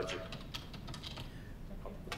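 Computer keyboard typing: a quick run of faint key clicks as a word is typed in to replace another.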